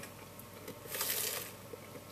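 A soft, brief sucking sound of about a second: a thick mango smoothie being sipped through a straw from a plastic cup.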